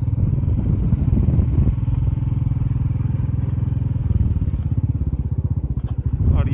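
Motorcycle engine running steadily while under way, with a rapid, even beat.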